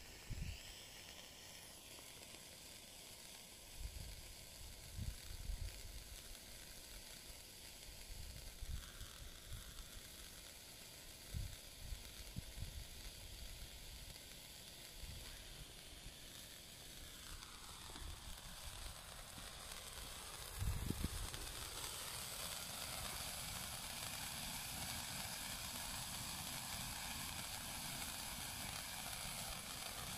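White Bengal flare burning with a faint, steady sizzling hiss, with a few short low thumps. About two-thirds of the way in the hiss grows louder and brighter.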